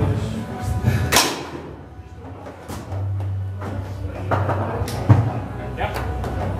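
Foosball table in play: the ball struck by the plastic players and knocking against the table, with a hard hit about a second in and another near the end.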